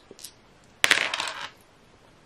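Two small plastic dice thrown onto a tabletop, clattering and rattling to a stop. The clatter starts suddenly a little under a second in and lasts about half a second.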